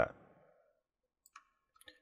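Two faint computer mouse clicks, one about a second and a half in and one near the end, over near silence.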